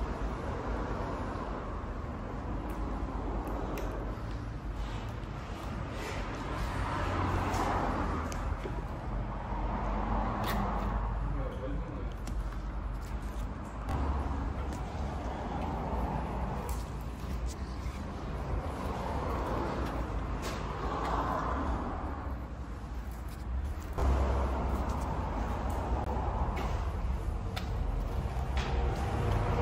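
Indistinct voices talking in the background of a workshop, over a steady low rumble and occasional small knocks; the background changes abruptly twice.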